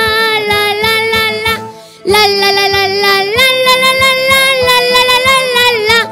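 A boy singing a Christmas carol into a microphone over a recorded backing track with a steady beat, holding long notes. The singing breaks off briefly about two seconds in and then resumes.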